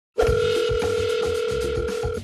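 Telephone dial tone sound effect: one steady tone that starts after a brief silence and is held for about two seconds, over a music bed with a drum beat.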